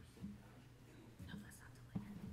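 Faint, low murmured speech in a hall, a few short fragments over steady room hum.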